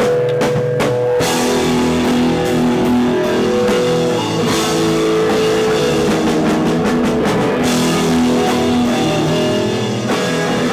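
Live rock band playing loudly, with drum kit and guitar, the drum hits thickest in the first second or so.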